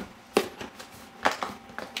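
Hands handling a cardboard laptop box: a few short knocks and taps on the cardboard, the clearest about a third of a second in.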